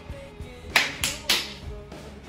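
Three quick, hissing puffs of breath about a quarter second apart, a man blowing out through his mouth over a too-hot bite of meat, over guitar background music.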